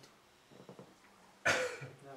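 A single short cough about one and a half seconds in; before it only faint room tone.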